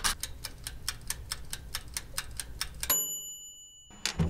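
Mechanical timer knob of a countertop toaster oven ticking rapidly, about seven ticks a second, over a low hum. Near the end the ticking stops and the timer's bell rings once and holds, signalling that the set time has run out.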